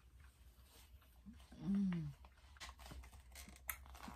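A person gives a short falling "mm" of enjoyment while tasting candy, then plastic candy packaging crinkles and clicks in quick, irregular crackles as it is handled.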